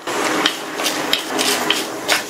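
Urad dal frying in hot oil in a stainless steel kadai, a steady sizzle with scattered clicks and scrapes as a wooden spatula stirs the lentils against the pan.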